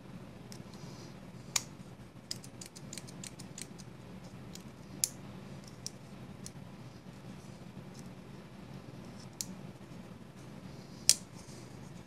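Civivi Vision FG folding knife handled while oil is worked into its pivot and lock: scattered small, sharp metal clicks, with a loud one about a second and a half in, a quick run of light ticks just after, another near five seconds, and the loudest near the end, over a low steady room hum.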